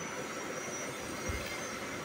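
Steady background hiss and room noise with no speech, a faint thin high tone running through it and one brief low thump a little past halfway.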